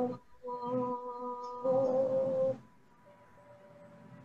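A woman's voice chanting "Om" on one long held note, after a short breath near the start; the chant ends about two and a half seconds in.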